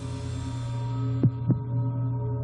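Background score: a steady low drone with a quick double thud, like a heartbeat, about a second and a quarter in.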